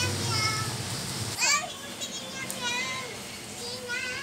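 A young child's high-pitched voice babbling and calling out in short bursts, over a steady low hum that cuts off about a second in.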